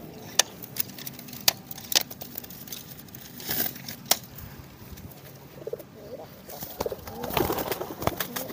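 Racing pigeons cooing, with several sharp clacks scattered through the first half.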